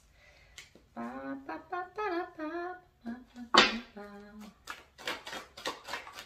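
A woman singing a few phrases of a song softly to herself, with held, gliding notes. Near the end, a quick run of clicks as a deck of tarot cards is shuffled by hand.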